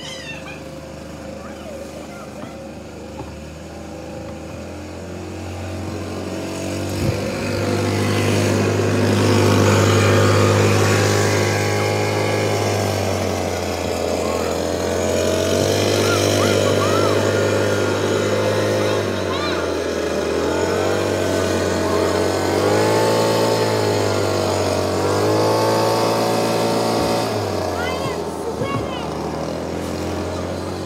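Handheld leaf blower running, getting louder over the first ten seconds or so, then its pitch dipping and rising several times in the second half.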